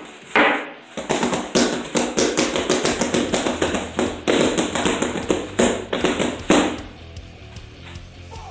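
A rapid flurry of bare-hand strikes slapping and knocking against a homemade wooden training dummy's arms, several hits a second. The flurry ends with a last hard hit about six and a half seconds in.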